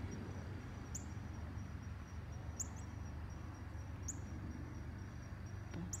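A faint steady high-pitched insect-like trill, with short high chirps repeating about every one and a half seconds, over a steady low rumble.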